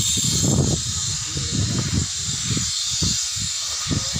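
Outdoor noise on a handheld phone microphone while walking: a steady high hiss with irregular low rumbling bumps.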